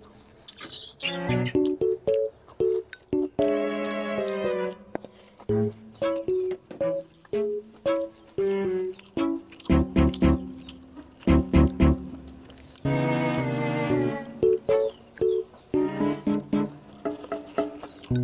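Background music: a light melody of short plucked notes with a few longer held tones.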